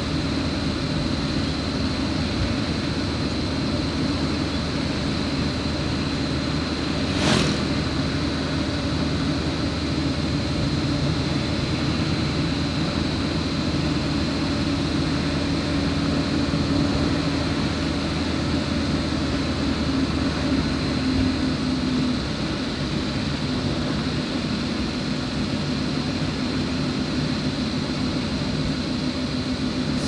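Steady engine hum and tyre noise from a vehicle driving along a smooth asphalt road. There is one short sharp click about seven seconds in.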